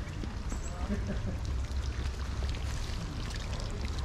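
Hot spring water running steadily out of a small rock-ringed pool and spilling across a paved path, over a low steady rumble and faint voices.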